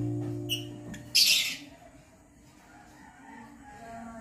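Background guitar music fading out, then a short, harsh, high bird call about a second in.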